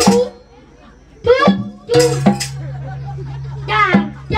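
Short amplified voice calls from the stage over a microphone, with janger music accompaniment. A low note is held steadily from about halfway in.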